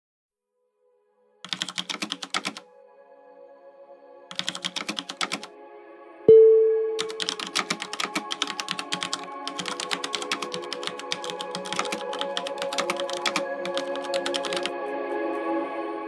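Keyboard typing clicks in three bursts, the last one long, over soft ambient music that swells in. A single loud ringing note sounds about six seconds in, the loudest moment.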